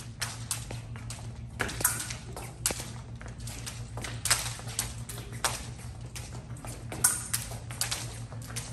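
Epee fencing bout: irregular quick taps and stamps of the fencers' footwork on the piste, mixed with sharp metallic pings of epee blades touching, the loudest about two, four and seven seconds in. A steady low hum runs underneath.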